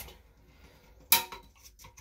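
A sharp plastic click about a second in, then a few fainter ticks, as the yellow top of a Kohler canister flush valve is twisted counterclockwise to release it.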